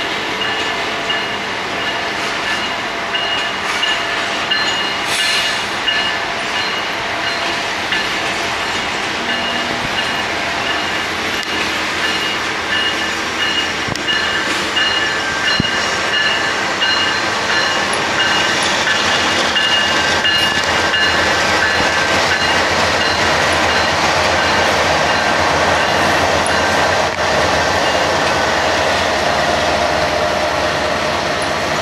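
Freight train rolling past at yard speed, wheels rumbling and clacking over the rails, with a steady high-pitched wheel squeal through the first two-thirds. From a little past halfway it grows louder and deeper as the GE diesel locomotives (an AC44CW and an ES44AC) go by.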